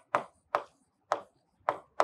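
Marker pen writing on a whiteboard: four short, sharp strokes about half a second apart as letters are written.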